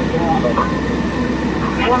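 Fire engine running with a steady low drone, with faint radio chatter over it.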